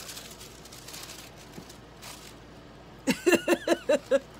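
A woman laughing in a quick run of loud laughs during the last second, after about three seconds of faint rustling as paper is handled.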